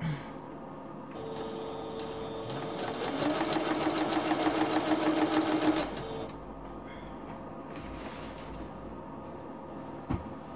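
Singer computerized sewing machine stitching a short run of seam. The motor starts about a second in, speeds up to a fast, even stitch rhythm about two seconds later, and stops about six seconds in.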